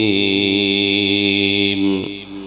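A man's voice in melodic Quran recitation, holding the drawn-out last word of the verse ('alīm') on one long note. The note settles slightly lower at the start and fades out near the end.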